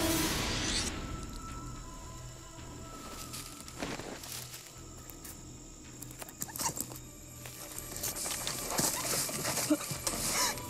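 Suspenseful horror film score: a low, pulsing drone under a few held high tones, growing busier near the end with a cluster of sharp clicks and scrapes.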